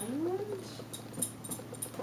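A short vocal sound in the first half second that glides up in pitch and falls back, followed by light crinkly clicks of fabric and wrapping being handled.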